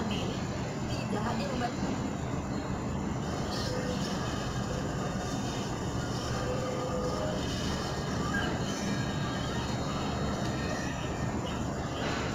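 Television sound from a satellite broadcast playing on a flat-screen TV: a steady, noisy programme soundtrack with faint voices.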